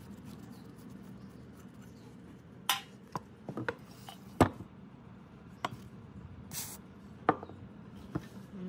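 Metal hand tools and the rusty steel body of an old hand pump being handled on a plywood board: a handful of separate knocks and clinks, the loudest about halfway, with a brief scrape near the end.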